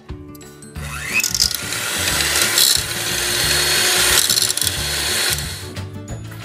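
Electric hand mixer running in a bowl of ingredients, starting about a second in and stopping just before the end, over background music.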